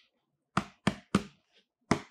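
Gloved fingers tapping on the top of a closed corrugated cardboard box: three quick taps about a third of a second apart, then a fourth near the end.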